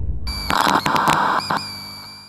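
Electronic logo sting for an animated outro: a low rumble dies away, then a bright, glitchy chord of steady high tones comes in, stuttering with a few quick clicks before it fades out.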